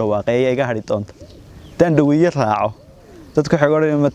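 A man speaking in three phrases with short pauses between them.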